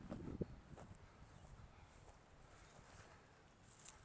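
Near silence: a faint low rumble of breeze on the microphone, with a short rustle near the end.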